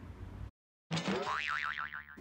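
A cartoon 'boing' sound effect cut in after a brief dead silence: a springy twanging tone that sweeps up and then wobbles rapidly up and down in pitch for about a second.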